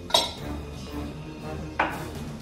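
Kitchenware clinking while tea is made: two sharp clinks about a second and a half apart, over background music.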